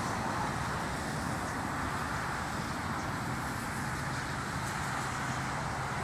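Steady background noise of distant road traffic, an even rumble with a faint low hum and no distinct events.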